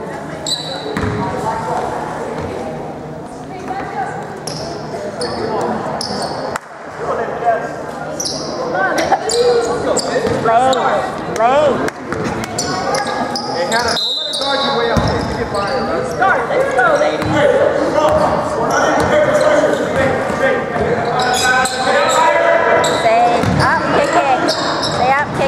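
Indoor basketball game: a ball bouncing on a hardwood court, short high sneaker squeaks and overlapping shouts and chatter from players and spectators, echoing in a large gym.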